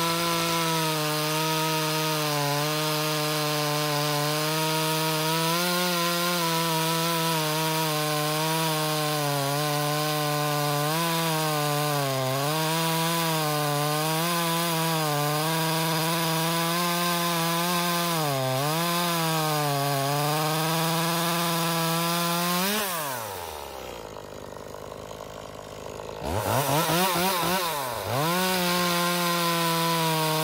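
Echo 2511T top-handle chainsaw's small two-stroke engine at full throttle cutting through a black walnut log, its pitch sagging and recovering as the chain loads up. About 23 seconds in the throttle is released and it falls to idle for a few seconds, then revs up again and goes back into the cut. The saw is in stock form, which the owner finds underpowered, with poor chain speed.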